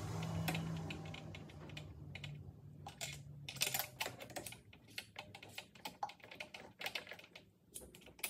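Socket ratchet clicking in quick, irregular runs as it turns the valve cover nuts on an engine. A low hum fades out over the first three seconds.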